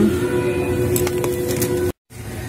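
Supermarket ambience: steady held tones over a low rumble, with two light clicks about a second in. The sound cuts off abruptly at the end.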